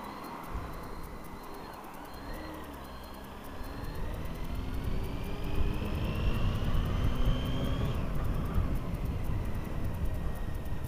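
Honda Hornet 900 motorcycle's inline-four engine pulling away and accelerating, its pitch rising steadily for several seconds until a gear change near the end. Wind rumble on the helmet microphone grows louder as the bike picks up speed.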